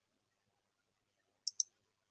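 Two short, sharp clicks a split second apart about a second and a half in; otherwise near silence.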